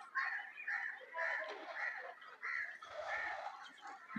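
Birds calling in the background: a string of short calls, two or three a second, fairly quiet.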